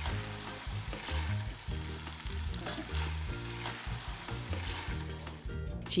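Chicken pieces sizzling in their juices in a pot while a wooden spoon stirs them, with background music underneath.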